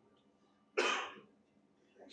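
A single cough, sudden and short, a little under a second in.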